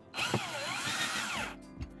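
Power drill driving a screw into a thermostat's metal mounting plate, the motor running for about a second and a half with its pitch sliding down and back up as the trigger is eased.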